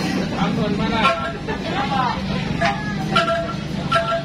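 People talking over a steady low engine drone from street traffic.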